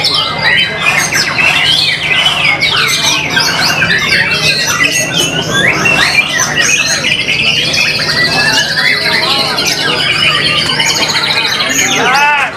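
White-rumped shama (murai batu) singing loudly and without a pause: a fast, varied run of sweeping whistles and chattering notes, breaking into a rapid high trill about eight seconds in. The song is delivered with the hard, high-speed strikes and unbroken duration prized in a contest bird.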